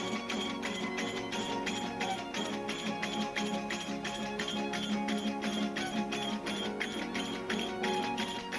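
Verdiales folk band playing live: strummed guitars and a violin over a fast, steady jingling percussion beat of about four to five strokes a second.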